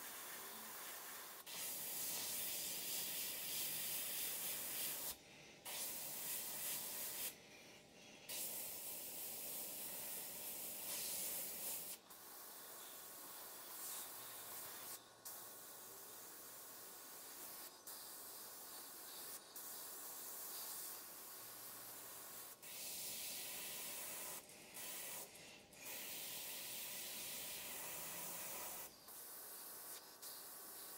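GSI Creos PS.770 dual-action gravity-feed airbrush spraying paint: an even air hiss in runs of a few seconds, cut by brief pauses as the trigger is let off, stronger in the first third and again near the end.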